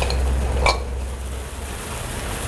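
A ceramic plate clinking twice against a steel saucepan as vegetables are tipped into boiling water, the second clink ringing briefly, over the bubbling of the boiling pot and a steady low hum.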